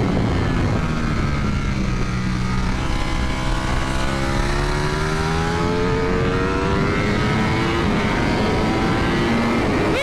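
Ducati Panigale V4 S V4 engine at high revs on a race track, over a steady rush of wind noise. Its note dips over the first few seconds, climbs steadily under acceleration, then drops at a gear change near the end.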